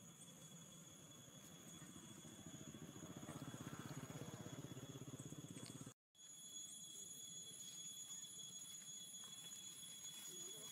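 Faint outdoor ambience: a steady high insect drone, with a low, fast-pulsing hum that swells in the first half. The sound cuts out completely for a moment about six seconds in.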